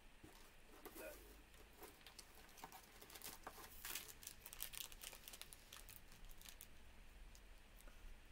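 Faint crinkling of a snack wrapper being handled, a string of small crackles that is busiest around the middle.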